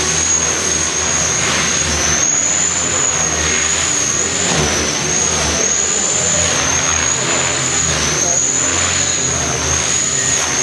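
Align T-Rex 500 electric RC helicopter flying aerobatics: a loud, high-pitched whine from the electric motor and pinion gearing that wavers slightly in pitch as the load changes, over the steady sound of the spinning main rotor.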